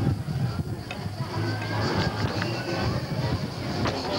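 Music playing, with people's voices mixed in.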